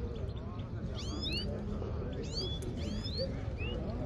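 Caged Himalayan goldfinches calling: clusters of quick, high, rising notes about a second in and again between two and three seconds, over a low murmur of voices.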